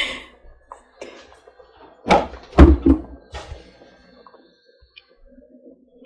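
Kitchen handling noise as palm oil is poured from a plastic jug into a steel pot of stew: two dull thumps about two seconds in, then a few lighter knocks.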